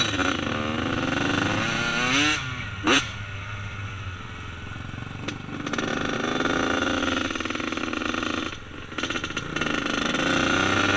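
Dirt bike engine heard from on board while riding, the revs rising and falling as the throttle works. About three seconds in there is a quick rise and a brief sharp spike, and a second before the end the revs drop off before climbing again.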